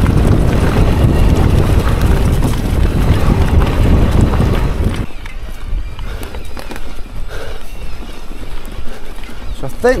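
Electric mountain bike riding over a rough dirt-and-stone trail: tyre roar and rattling of the bike over the ground, with wind rushing over the helmet-camera microphone. Loud for the first five seconds, then quieter.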